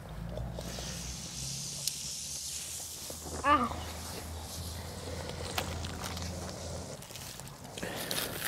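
Wood fire burning in a steel fire pit, hissing with a few sharp crackles, over a low steady hum.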